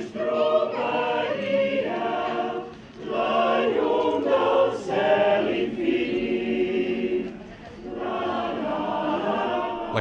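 Mixed amateur choir of women and men singing unaccompanied, in phrases with two brief softer breaks about three and seven and a half seconds in.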